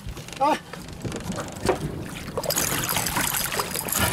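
Splashing and scattered knocks against an aluminium boat's side as a wahoo is hauled aboard, over a hiss of wind on the microphone that grows louder in the second half; a short shout comes about half a second in.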